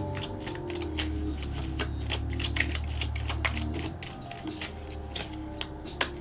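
A tarot deck being shuffled by hand: a quick, irregular run of card clicks and snaps that thins out in the last couple of seconds. Soft background music with a held low note plays underneath.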